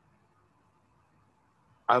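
A pause in a man's speech, near silence with only faint room hiss, before he starts talking again just before the end.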